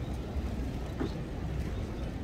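Outdoor crowd ambience: a steady low rumble with faint distant voices, and one short knock about a second in.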